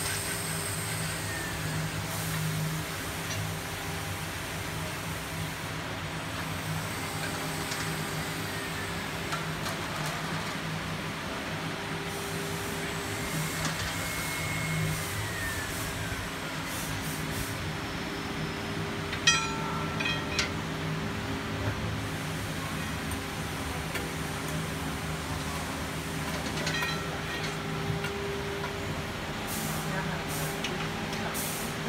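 Steady low hum and hiss of running machinery, with a few faint sliding tones and two short electronic tones, one about two-thirds through and one near the end.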